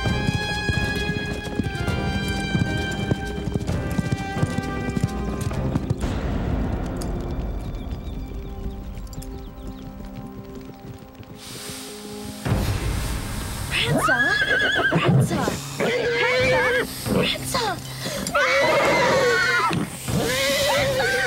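Horses whinnying shrilly and repeatedly from about two-thirds of the way in: a horse spooked by a snake on the ground. Before that come galloping hoofbeats under dramatic film music.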